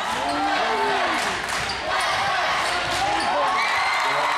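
A basketball being dribbled on a gym's hardwood floor, with short impacts throughout, against the steady voices of a crowd of spectators talking and calling out.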